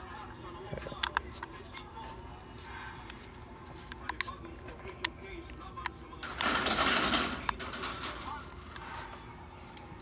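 Handling noise from plugging a micro USB power cable into a small plastic screen-mirroring dongle: scattered sharp clicks of plastic plugs and casing, with a rustle lasting about a second, about six and a half seconds in, over a low steady hum.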